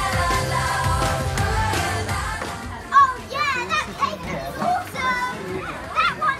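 A pop song with singing that fades out about halfway through, followed by young children's high-pitched excited voices and shouts, starting with a sudden loud cry.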